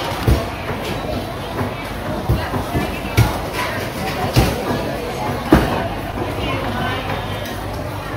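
Several loud, irregular thuds of a cleaver chopping meat on a thick wooden chopping block, over steady market chatter.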